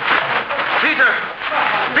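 Speech from a radio drama: a man calls out 'Peter' over many overlapping voices of an excited crowd.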